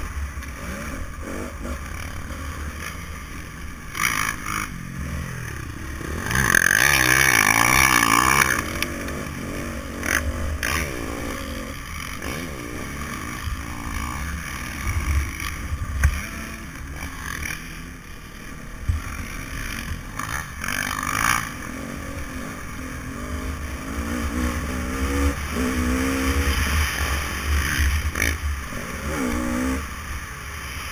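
Motocross dirt bike engine running hard around a track, its pitch rising and falling as the rider works the throttle. There is wind rumble on the bike-mounted microphone, and the loudest stretch comes about six to nine seconds in.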